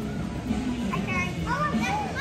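Children's voices and shouts mixed together, the hubbub of many children at play, over steady background music.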